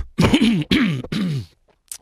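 A man clearing his throat close to the microphone, in about three short voiced bursts that each drop in pitch.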